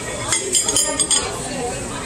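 Metal tongs and cutlery clinking against ceramic plates, a quick run of clinks in the first second or so, with voices murmuring behind.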